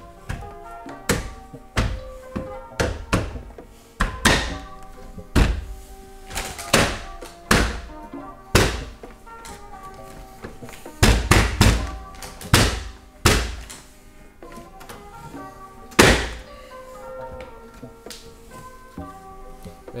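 Plastic kidney grille tabs being pressed and snapped into a BMW F10 M5's front bumper: a string of irregularly spaced sharp knocks and snaps, a quick run of them a little past the middle and a last loud one near the end. Background music plays throughout.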